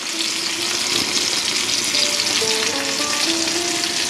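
Mushroom and string bean curry frying in a cast-iron skillet: a steady sizzle.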